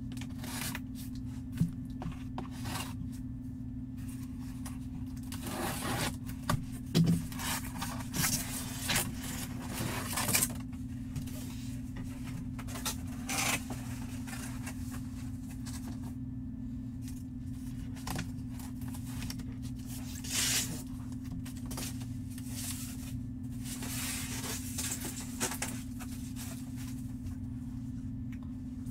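Cardboard box and packaging being handled and slid apart, with scraping and rustling in scattered bursts, over a steady low hum.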